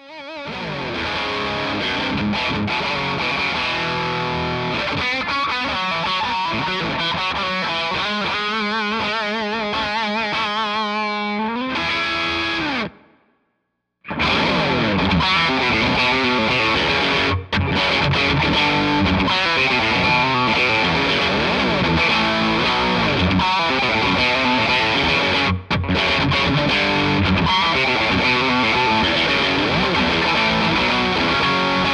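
Fender Elite Stratocaster electric guitar played through distortion: a fast lead line that ends in long, wavering, vibrato-laden notes and fades out about 13 seconds in. After a second of silence, loud distorted electric-guitar rock music starts and runs on.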